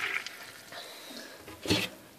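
Kitchen tap water pouring into a plastic jug, cut off just after the start and dwindling away. About three-quarters of the way through comes one short knock as the jug is moved in the stainless-steel sink.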